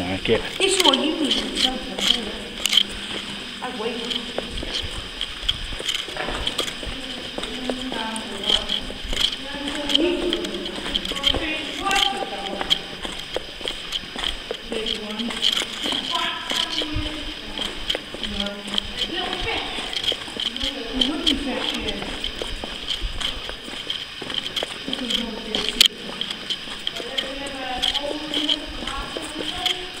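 Indistinct voices talking on and off, with scattered sharp clicks and knocks throughout.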